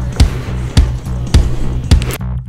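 Rock band's studio track playing without vocals: heavy bass under sharp drum hits on a steady beat, a little under two a second.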